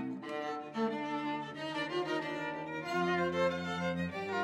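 String quartet playing live: bowed violins and cello holding sustained chords. The chord changes just after the start, and a lower held note comes in about three seconds in.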